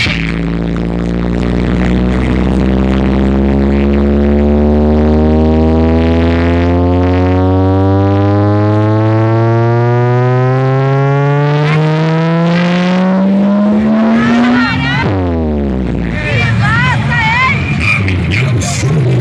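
Sound-system truck's speaker wall playing a loud, buzzy drone full of overtones that climbs steadily in pitch for about fifteen seconds, then drops quickly. Whistling and crowd noise follow near the end.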